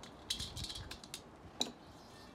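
Small metal parts clicking and rattling as the bolted daisy-wheel vent cover is worked loose and lifted off a steel smoker bowl. There is a flurry of light clicks about half a second in and a single sharp clink near the end.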